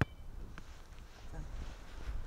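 Wind buffeting the microphone, an uneven low rumble, with a sharp click and brief ring right at the start.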